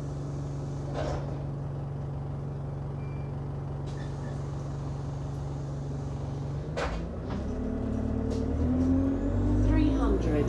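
Alexander Dennis Enviro 200 Dart single-deck bus heard from inside the saloon: a steady low engine hum, then a sharp click about seven seconds in, after which the engine note climbs and grows louder.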